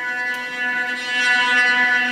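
Music playing from an iPad through a home-built digital amplifier into loudspeakers: a held chord of steady tones.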